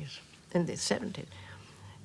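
An elderly woman speaking a few soft words in the middle of a sentence, then a short pause.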